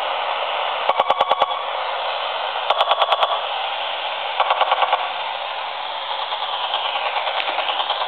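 AM radio static hissing steadily, broken three times by short bursts of rapid pulses, about a dozen a second, as a DVD player remote control's button is pressed close to the radio. The pulses are the remote's electromagnetic interference picked up by the radio.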